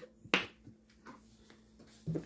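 One sharp click about a third of a second in, then a few faint ticks: small kitchen items being handled just out of view, over a faint steady low hum.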